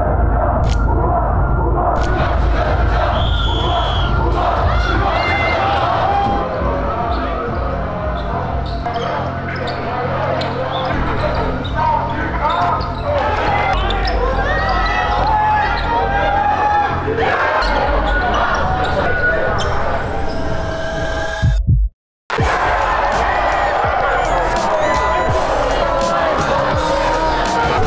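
Basketball game sound in a sports hall: the ball bouncing on the court and voices of players and spectators, with music underneath. The sound drops out completely for a moment near the end.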